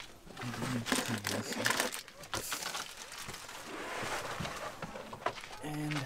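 Crinkling, rustling and clicking of bags and gear being handled, with short bursts of indistinct voices.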